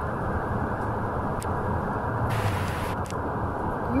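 Steady low rumble of a moving bus, engine and road noise, heard from inside the passenger cabin.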